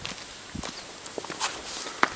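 Footsteps on a stony dirt path: irregular short steps of people walking.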